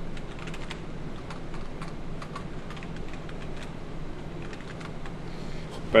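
Computer keyboard typing: a run of quick, irregular keystrokes, over a low steady hum.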